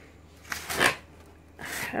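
A hand brushing against the torn cardboard wrapping of a boxed door: one short rustle about half a second in.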